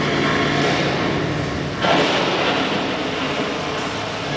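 Loud rumbling sound effects of a show soundtrack played over a large arena's PA system, with a sudden whooshing surge about two seconds in.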